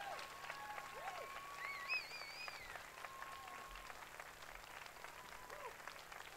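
Faint, scattered applause from a small audience, with a few short high whistles heard among the clapping.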